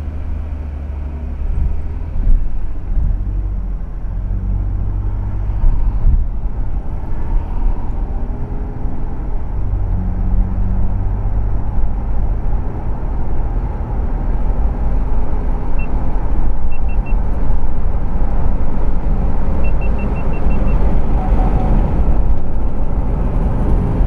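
Car engine and road noise heard inside an SUV's cabin as it pulls away and speeds up. The low rumble grows louder over the first half, then holds steady at cruising speed.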